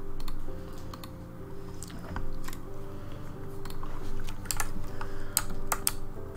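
Computer keyboard keys clicking in irregular, scattered presses over quiet piano background music.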